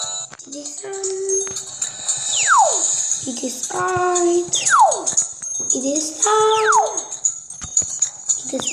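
Cartoon music and sound effects from a children's story app: a whistle-like glide falls from high to low about every two seconds, each time followed by a short rising, then held, tone.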